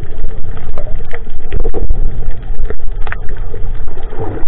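Muffled underwater sound picked up by a camera in a waterproof housing: a loud, dense low rumble of water moving against the housing, with scattered sharp clicks and knocks.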